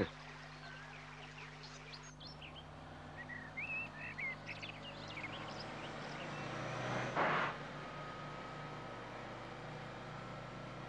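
Quiet roadside ambience with birds chirping, then a bus engine running and growing louder as the bus approaches, with a brief rush of noise about seven seconds in as it goes past.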